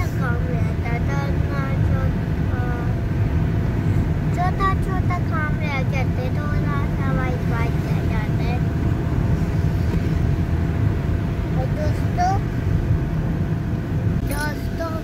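Steady low road and engine rumble inside the cabin of a moving car, under a child's high-pitched talking.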